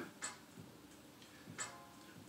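Quiet room tone with two faint clicks about a second and a half apart.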